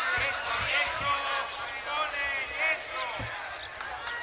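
Players' voices shouting and calling out indistinctly during a football match. A few dull thuds of the ball being struck come near the start, about a second in, and again near the end.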